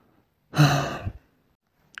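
A man's breathy sigh, one short exhale with voice in it, a little after the start.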